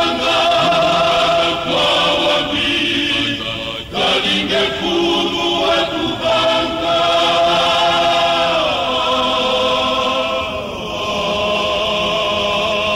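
Male choir singing a religious song, holding long sustained chords; the voices break off briefly about four seconds in and step down together in pitch near the nine-second mark.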